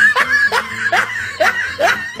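A person's chuckling laugh: a string of short notes, each rising in pitch, about two or three a second.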